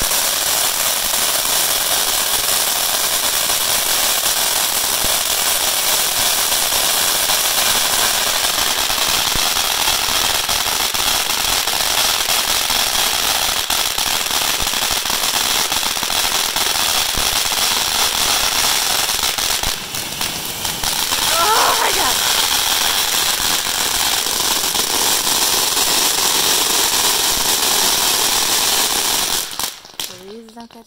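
'Amazing' firework fountain by Cutting Edge Fireworks spraying sparks with a loud, steady hiss. The hiss dips briefly about two-thirds of the way through, then cuts off suddenly near the end.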